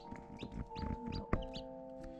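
Newly hatched chicks peeping, several short high cheeps in the first second and a half, with one sharp click a little after a second in.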